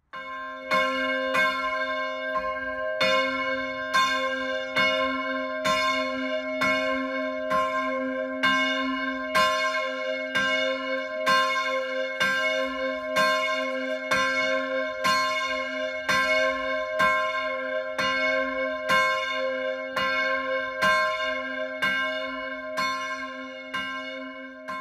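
Church bell in a freestanding bell tower, tolling: struck over and over at a steady pace, each stroke ringing on into the next, rung to call in a church service.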